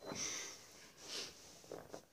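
Stifled laughter: three short breathy bursts, the first the longest.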